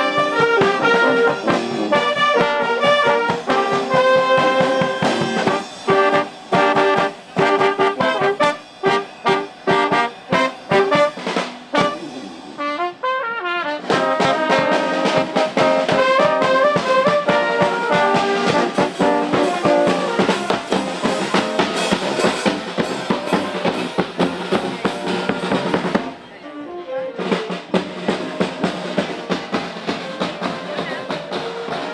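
A street marching band of trumpets, saxophones, low brass and drums playing a lively tune. The playing breaks off briefly about 13 seconds in and again near the end.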